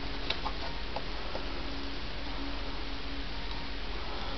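A few light clicks and ticks in the first second and a half from handling a stiff piece of carbon-fibre vinyl wrap on a workbench, over a steady background hiss.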